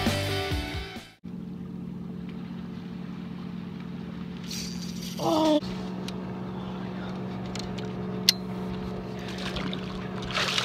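Rock music fades out in the first second. A steady low boat-motor hum then runs on, with a brief pitched cry about five seconds in and a single click near the end.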